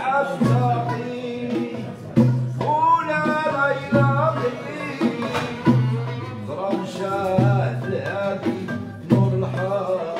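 Moroccan malhoun ensemble playing and singing: voices carry the sung melody over oud and upright-held violin, with a deep hand-drum stroke about every two seconds.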